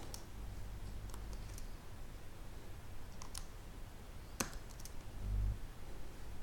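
A handful of separate clicks from computer input over faint background hiss, the sharpest about four and a half seconds in, with a brief low thud near the end.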